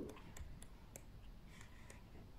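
Faint, soft clicks and paper rustle of a colouring book's pages being turned by hand.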